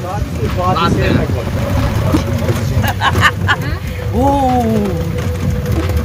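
Steady rumble and wind noise of an open-sided tourist vehicle moving along a forest road, with snatches of passengers' voices over it. A faint steady whine joins about halfway through.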